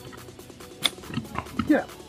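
A single sharp click about a second in: a golf iron striking the ball on an approach shot.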